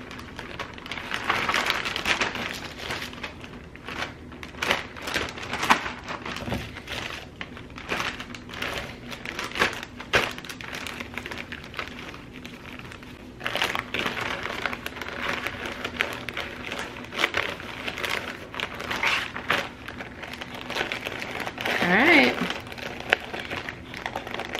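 Plastic zip-top bag crinkling and rustling as handfuls of washed lettuce are packed into it, with irregular crackles throughout. A brief voiced sound comes near the end.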